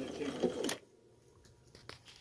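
A low continuing sound cuts off with one sharp click about two-thirds of a second in, followed by near silence broken by a few faint clicks.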